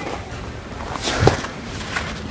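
Boot steps on packed snow, a soft crunch a little over a second in, over low outdoor background noise.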